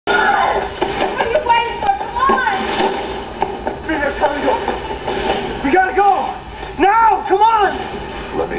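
People's voices from a film soundtrack, heard through a TV's speaker, with two drawn-out vocal sounds near the end.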